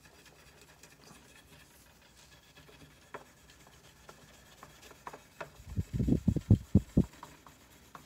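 Four-ought (0000) steel wool rubbed back and forth over a guitar fret to polish the marred crown. It is faint scratching at first, then a quick run of about seven louder rubbing strokes, some five a second, over the last couple of seconds.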